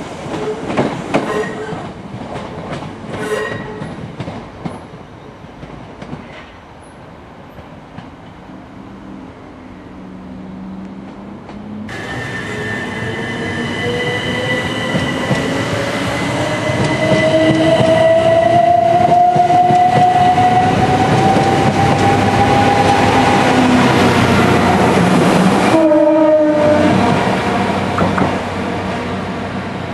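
An electric multiple unit pulling away, its wheels clicking over the rail joints and fading. After a quieter spell a yellow engineering train approaches; its running sound grows loud with a tone that climbs steadily in pitch, then changes abruptly as it passes close near the end.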